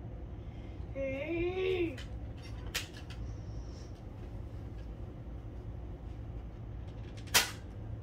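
A brief high-pitched vocal squeal about a second in, then a couple of faint clicks, and one sharp knock near the end, the loudest sound, over a steady low room hum.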